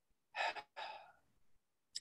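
A man's breath near the microphone: two short, faint breathy sighs, about half a second and a second in.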